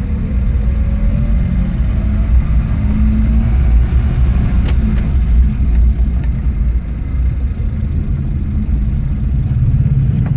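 Car engine running at low speed with a steady low rumble, heard from inside the vehicle's cabin, with a few faint clicks about halfway through.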